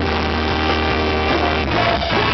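Live ska band playing full out: saxophone and trombone horn section over electric guitar and a steady bass line.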